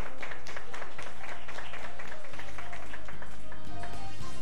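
A group of people clapping their hands, with music underneath. About two seconds in, the clapping gives way to background music with a steady low bass.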